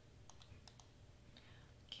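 Near silence with a few faint computer mouse clicks, grouped in the first second.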